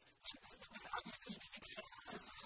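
A man speaking Arabic; the voice sounds rough and noisy.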